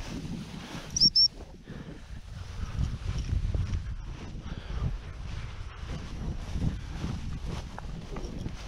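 Two short, high whistle toots about a second in, over the steady swish and rumble of a person walking through tall dry grass, with wind on the microphone.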